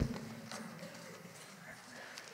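Small taps and rustling from things being handled at a lectern close to the microphones, with a short low hum in the first part of a second.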